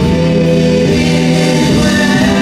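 Live Christian worship music: a woman sings lead into a microphone over acoustic guitar and keyboard, with backing singers, holding notes that move to new pitches a couple of times.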